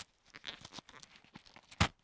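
Synthetic leather chin strap of a boxing headgear being threaded through its slot and pulled back: faint scattered scrapes and small clicks of the strap, with a sharper click near the end.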